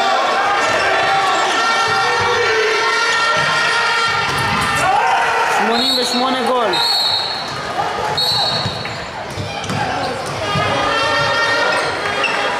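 A handball bouncing and thudding on a wooden sports-hall floor, with long steady tones and voices echoing in the hall. About six seconds in, shouts are followed by three short, high referee's whistle blasts.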